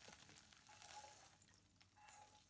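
Near silence, with only a very faint, brief sound about a second in.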